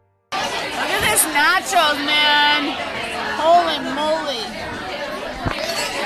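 Voices talking over the chatter of a busy restaurant, starting abruptly after a brief silence about a third of a second in.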